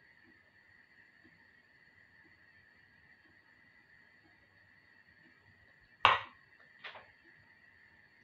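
A metal spoon is set down on a hard work surface with one sharp knock about six seconds in, and a smaller knock follows about a second later. Otherwise only a faint steady high whine is heard.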